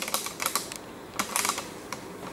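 Handling noise as the camera is tilted down: a few quick clusters of light clicks and taps.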